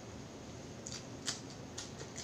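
Close-miked hand-eating sounds: three short, sharp wet clicks as the fingers gather rice and food and the mouth works on it, the loudest about a second in.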